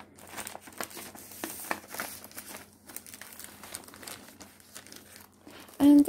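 A clear plastic punched pocket crinkling and rustling in irregular bursts as a paper sheet is slid into it and handled.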